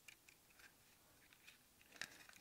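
Near silence: room tone with a few faint, light clicks from a small plastic electronics case being handled.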